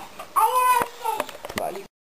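A man's short whining cry, one pitched wail that rises and then falls, followed by a few faint clicks; the sound cuts off abruptly near the end.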